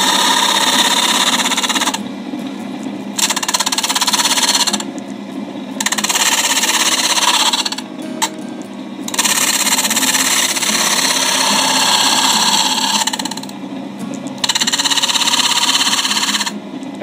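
Lathe-driven homemade disc sander with a 60-grit disc sanding a wooden block in repeated passes: a loud, gritty hiss during five contacts of a few seconds each, broken by short gaps where the steady hum of the spinning disc and motor carries on alone.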